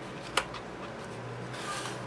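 Hands handling a paper card and twine close to the microphone: one sharp click about a third of a second in, then a short soft hiss near the end, over a low steady hum.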